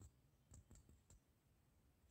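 Near silence with four faint, short clicks between about half a second and a second in.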